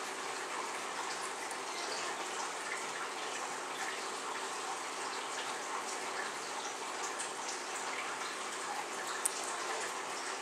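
Steady hiss of background noise, even and unchanging, with one faint click near the end.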